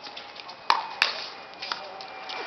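Pickleball paddles striking the plastic ball in a quick rally: two sharp pops about a third of a second apart, a little past halfway, then a fainter pop shortly after.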